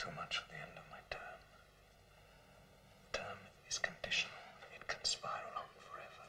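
A man speaking in a hushed whisper, in two short stretches: one in about the first second and a longer one from about three seconds in to near the end.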